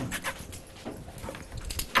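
Dogs panting and moving about, with short breathy puffs and light scuffs.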